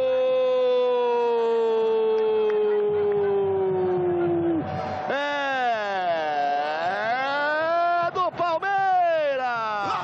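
A television football commentator's drawn-out goal cry: one long held "gol" that slowly falls in pitch, then, after a short break about five seconds in, more long shouts that dip and rise, broken by a few short syllables.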